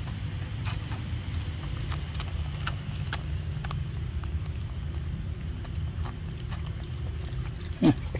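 Small clicks and smacks of a long-tailed macaque drinking milk through a straw from a carton, over a steady low rumble. Just before the end comes one short, loud voice that falls in pitch.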